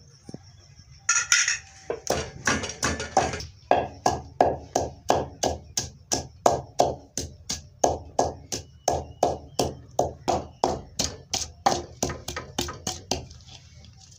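Wooden pestle pounding green chillies and ginger in an earthenware mortar (kundi): a steady run of strikes about three a second, starting about two seconds in and stopping near the end.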